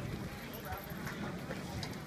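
Faint, distant voices of people talking and calling over a steady, irregular low rumble.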